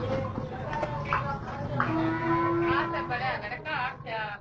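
Stone flour mill (chakki) running with a steady low hum. About two seconds in, a single long, level call sounds over it for just over a second.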